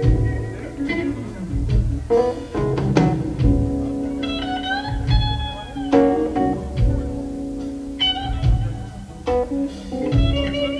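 Live blues-soul band playing: an electric guitar lead with bent notes over electric bass and drums.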